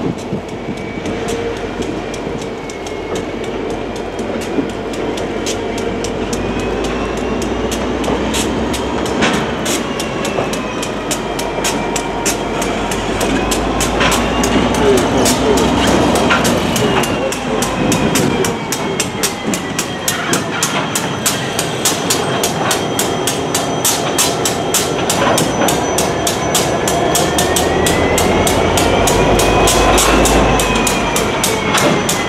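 Reading & Northern diesel-hauled freight train passing close by: the locomotives' diesel engines run as they go past, then the boxcars' wheels click over the rail joints at a quickening rate. A thin, high wheel squeal wavers up and down in pitch.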